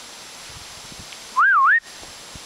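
A person whistling once, a short clear call of about half a second that rises, dips and rises again, near the end.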